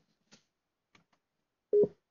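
A single short electronic beep near the end from the Honda HandsFreeLink hands-free system, the prompt tone after the talk button is pressed that signals it is ready for a voice command. Two faint ticks come before it.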